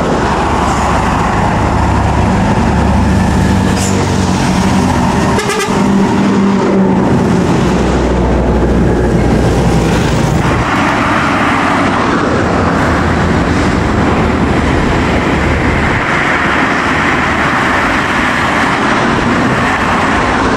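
Heavy diesel trucks driving past close by, their engines droning low. From about ten seconds in, the drone gives way to a steady rush of tyre and engine noise from the passing traffic.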